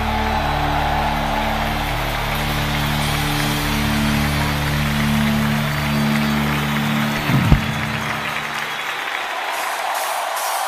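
Live worship band ending a song: a sustained low chord held over crowd cheering and applause, cut off by a final hit about seven and a half seconds in. The crowd noise carries on alone after the hit.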